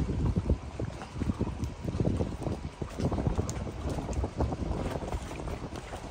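Strong wind buffeting the microphone in uneven gusts, a low rumble, over choppy lake water lapping around a dock and moored boats.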